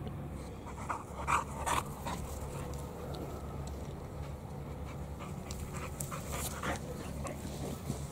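A dog panting close to the microphone, with a few sharper breaths about a second in and again past six seconds.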